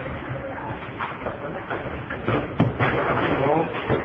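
Indistinct voices talking in the background, louder in the second half, with a couple of short sharp clicks.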